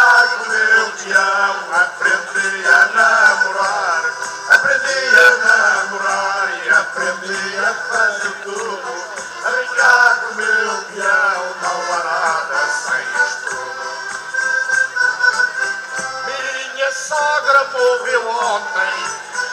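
A live folk group performing a song over loudspeakers: male voices singing with instrumental accompaniment.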